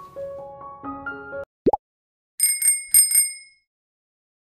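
A few notes of background music end, then a short rising swoop, then a bicycle-bell sound effect rings four times in two quick pairs.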